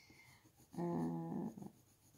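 A woman's drawn-out hesitation sound, "euh", held at one pitch for under a second, starting about a second in.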